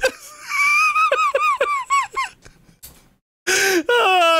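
A man laughing hard in high-pitched squeals: a rapid run of rising-and-falling squeaky cries, then a short pause and a breathy gasp near the end.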